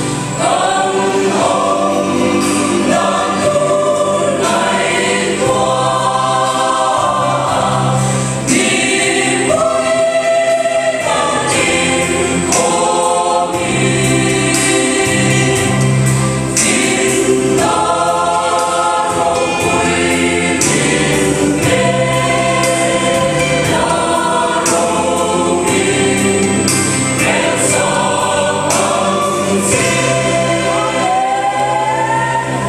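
Mixed-voice church choir, women and men, singing a Christian hymn, held steadily throughout.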